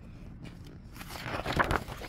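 A paper page of a picture book being turned, a short rustle and scrape that is loudest about one and a half seconds in.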